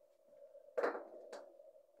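Handling noise as a plug and cable are handled on a toolbox power bank: a short rustle a little under a second in, then a sharp click half a second later, over a faint steady hum.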